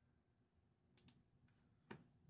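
Near silence with a few faint computer mouse clicks: two close together about a second in and one more near the end.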